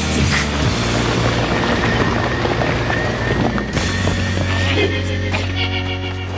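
Cartoon action score mixed with dense sound effects. A faint, slowly rising tone runs through the middle, and a deep low drone comes in a little past halfway.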